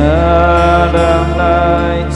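A man singing a Taiwanese ballad, holding one long sung note that wavers slightly, over sustained chords on a digital piano.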